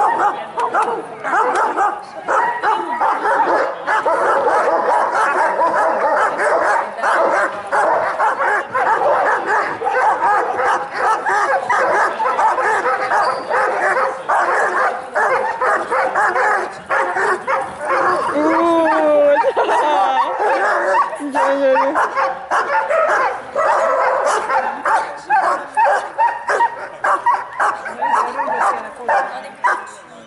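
A kuvasz barking loudly and rapidly without pause, as a helper provokes it in a breed-survey temperament test of its aggression and how fast it calms.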